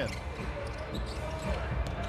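Basketball being dribbled on a hardwood court, over a steady low hum of arena ambience.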